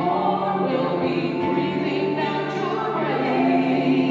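Several voices singing a hymn together into microphones, with held notes and steady sustained accompaniment underneath.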